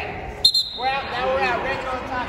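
A single sharp smack about half a second in, then voices calling out during a wrestling bout.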